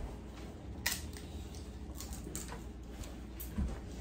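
Scattered light clicks and crackles of crab legs and shrimp shells being broken and handled by hand over foil trays, with one sharper click about a second in.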